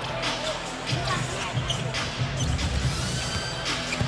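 Game sound from a basketball court during live play: the ball bouncing on the hardwood floor, with scattered knocks and a few short rising squeaks late on, over background music.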